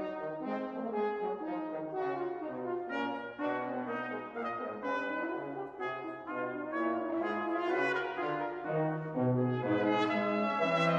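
Ten-piece brass ensemble of trumpets, French horn, trombones and tuba playing in several parts at once. The notes are short and change quickly over a moving tuba bass line.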